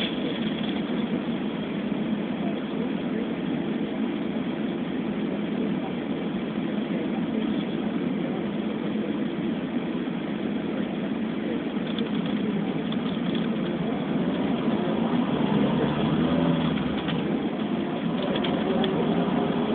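Steady engine and road hum heard from inside a car in slow traffic, getting a little louder about fifteen seconds in as the car picks up speed.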